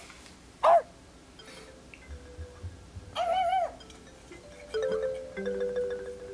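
Soundtrack of a children's puppet show: a short falling dog-like yelp about half a second in, then a longer wavering whine around three seconds in. Light mallet-percussion music with held xylophone-like notes comes in near the end.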